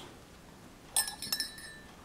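Mesh tea-ball infuser on metal scissor tongs clinking against a porcelain cup. There are a few sharp, ringing chinks about a second in.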